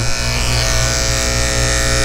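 Electric dog grooming clipper fitted with a snap-on comb, running steadily with an even buzz, switched on near a puppy to accustom it to the vibration.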